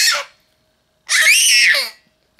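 Baby squealing: a short high-pitched squeal that ends just after the start, then a longer one of just under a second, its pitch wavering up and down.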